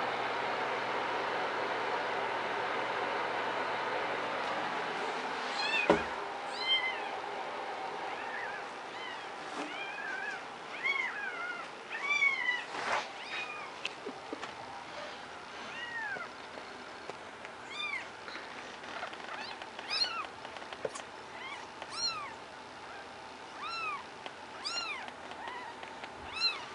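Kitten mewing over and over in high, thin cries, while its mother carries it to her nest. A steady noise fills the first five seconds, and a knock comes about six seconds in.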